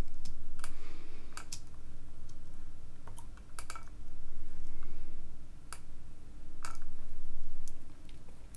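Computer mouse clicking: about eight short, sharp clicks, irregularly spaced, over a steady low hum.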